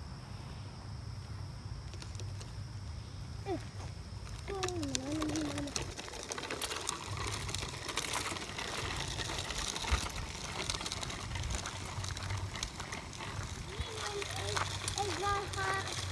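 Child's small bicycle with training wheels rolling along a path, its tyres and training wheels giving a dense crackle of small clicks over grit and gravel once it gets going, over a steady low rumble.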